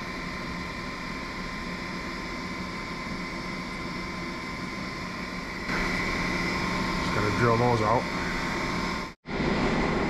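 Steady hum of shop ventilation or a fan, with a few fixed tones in it. About seven seconds in, a person's voice sounds briefly, wavering up and down in pitch.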